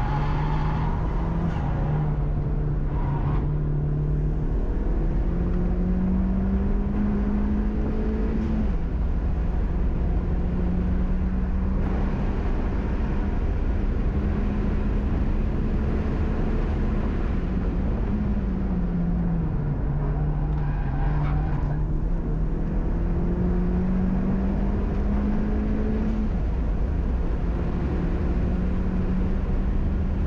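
Honda Civic Si's turbocharged 1.5-litre four-cylinder, fitted with a 27Won W2 turbo, heard from inside the cabin while being driven hard on track. The engine note climbs steadily for several seconds at a time and then drops back, over and over, as the car works through the gears and slows for corners. Loud road and tyre noise runs underneath.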